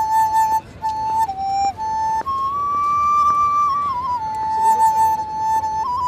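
Transverse bamboo flute playing a slow melody of long held notes, one pitch at a time, with a short break near the start, a step up to a higher note about two seconds in and a step back down around four seconds in.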